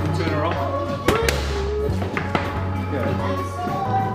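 Background music with a steady bass line and a voice. Over it come sharp smacks of boxing gloves landing on focus mitts, loudest about a second in, with another shortly after and one more a bit over two seconds in.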